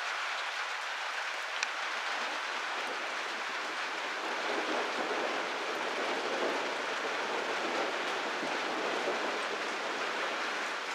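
Steady rain falling in a thunderstorm, an even hiss with one sharp tick about one and a half seconds in; the sound fills out a little in the second half.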